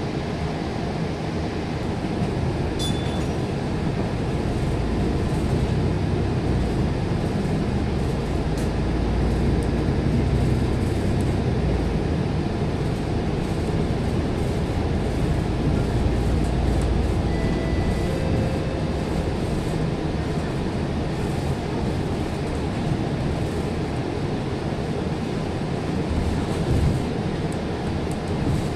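Inside a moving double-decker bus: steady low engine and road rumble that swells and eases a couple of times, with a brief click a few seconds in.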